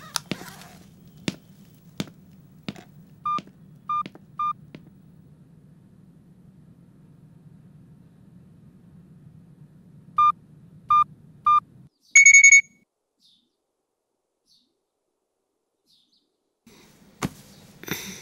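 A mobile phone's electronic signals: two sets of three short, evenly spaced beeps, then a brief, loud buzzing tone about twelve seconds in. A few sharp clicks come in the first seconds.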